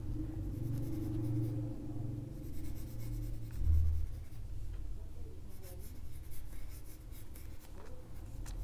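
Pencil strokes on paper: faint, intermittent scratching of sketch lines as a dog's mouth is drawn, over a low steady hum.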